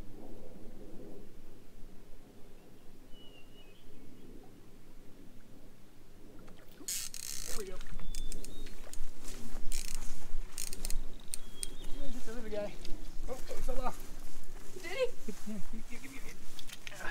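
Quiet creekside air, then from about seven seconds in a run of irregular rustles and crackles as tall grass brushes against the microphone while the camera is carried through it. Low, indistinct voices come in near the end.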